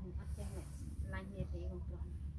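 A woman's voice talking softly, with a short, sharp hiss about half a second in, over a steady low rumble.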